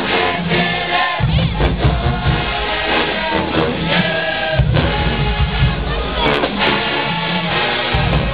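A college marching band playing, with full brass-band harmony over a heavy low end. The deep bass drops out briefly about a second in and again at about four seconds.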